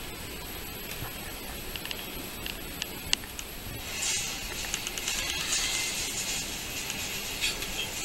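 Computer mouse clicking and scrolling as a photo is moved and zoomed on screen: scattered light clicks, joined about halfway through by a steady rustling hiss of handling noise and a quicker run of clicks.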